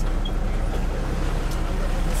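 Van's engine and tyre noise heard from inside the cabin while driving, a steady low rumble.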